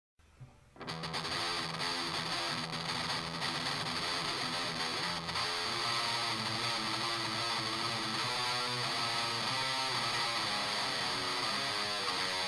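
Guitar-only grunge instrumental, the guitar starting about a second in and playing on steadily.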